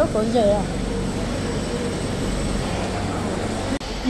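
A few spoken words, then a steady hiss and low hum of shop background noise that cuts off abruptly near the end.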